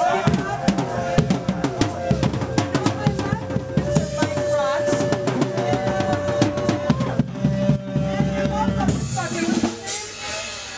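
A live drum kit played fast and hard, with rapid bass-drum and snare hits, under a held instrument note and shouting voices. The drumming stops near the end.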